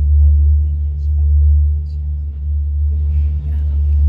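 A deep, steady low rumble: a bass drone played through the theatre's sound system as a concert intro, with only faint scattered sounds above it.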